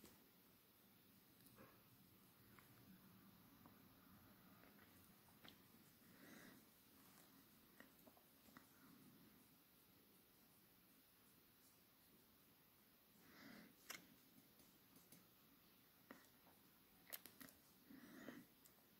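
Near silence: room tone, with a few faint soft rustles and clicks, most noticeable past the middle and near the end.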